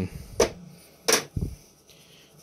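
Two sharp knocks about three-quarters of a second apart, followed by a softer dull thump: a hand handling objects on a workbench.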